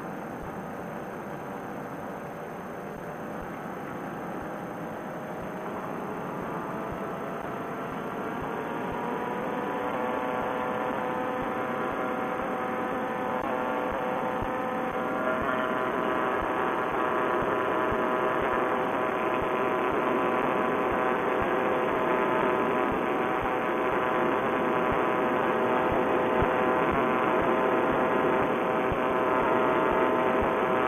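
A paramotor trike's Vittorazi Moster single-cylinder two-stroke engine and propeller running under power. Its pitch rises over the first ten seconds or so and the sound grows louder, then holds steady at the higher throttle as the trike climbs away from the river.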